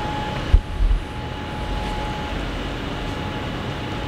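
Steady downtown city background noise with a faint steady tone running through it. Two short low bumps come about half a second in and again just before a second in.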